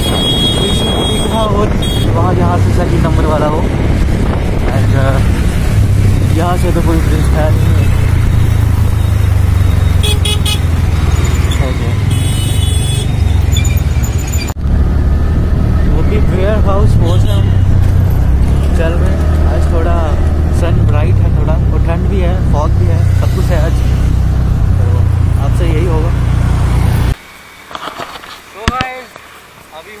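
Loud road traffic and vehicle noise: a heavy steady low rumble with voices and horn-like tones over it, dropping suddenly to much quieter near the end.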